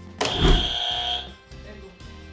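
Background music, with a sudden edited sound effect near the start: a thud and a steady high tone lasting about a second, then cut off.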